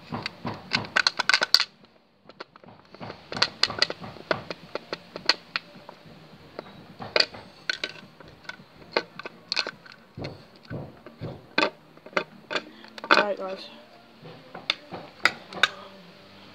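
Irregular sharp clicks and light taps, sometimes several close together and then pauses, from a thin stick poking and stirring slime in a small plastic dish.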